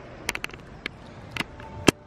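A few scattered sharp clicks and taps over faint outdoor background noise, the loudest click near the end.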